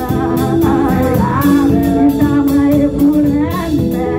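A woman singing a gospel worship song into a microphone, over live band accompaniment with held keyboard notes and a steady drum beat.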